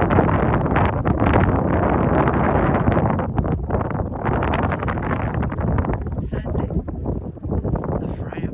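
Wind buffeting the phone's microphone: a loud, steady rushing noise that eases off somewhat in the last couple of seconds.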